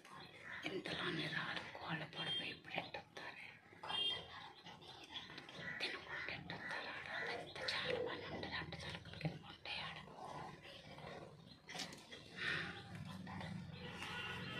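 Low, indistinct speech with scattered small clicks.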